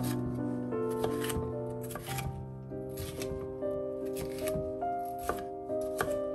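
Chef's knife slicing through a red bell pepper onto a wooden cutting board in short, irregularly spaced strokes, over background music with sustained, held notes.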